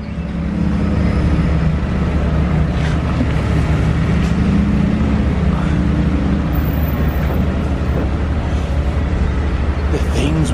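A motor running with a steady low hum.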